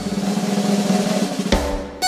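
Drum roll on a drum kit over a held low note, ending in one sharp accented hit about one and a half seconds in that dies away.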